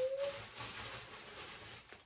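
A brief soft hummed vocal sound at the start, then faint rustling of chocolate bar packaging being handled.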